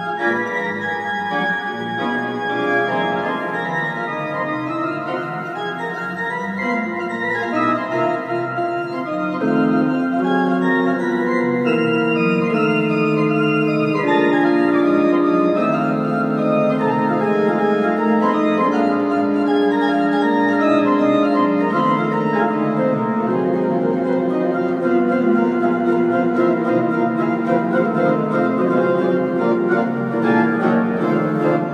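Metzler church pipe organ playing a boogie-woogie blues in sustained chords, growing louder about ten seconds in.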